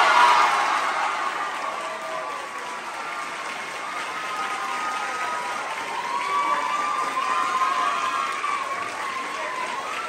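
Audience applauding an award announcement, loudest in the first second and then steady, with voices calling out over the clapping.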